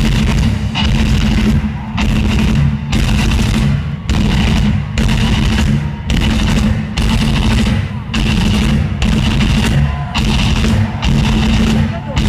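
Heavy metal band playing live at full volume, distorted guitars and drums hitting in a stop-start rhythm with short breaks about once a second.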